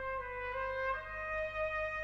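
Background music: a solo trumpet holding slow, sustained notes, stepping up in pitch about half a second in and again about a second in.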